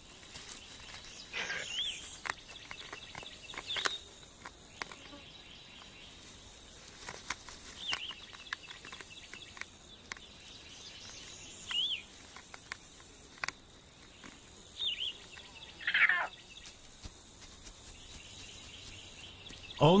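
Outdoor grassland ambience: a steady high hiss with short bird chirps scattered through it every few seconds, and a couple of longer falling calls. Faint clicks and rustles also come through.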